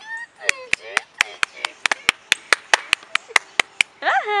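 A fast, even run of sharp clicks, about four or five a second, with a brief voice sound at the start.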